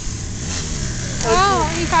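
Dirt bike engine running on the track at a distance, its pitch rising over the first half second as it revs up and then holding steady.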